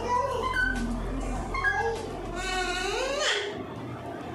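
Alexandrine parakeet calling: a string of short pitched calls, with a longer rising call about two and a half seconds in.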